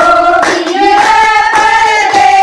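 A group of women singing a folk song together in long held notes, with hand claps keeping time.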